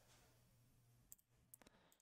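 Near silence: faint room tone with a few soft, brief clicks, one about a second in and a couple more shortly after.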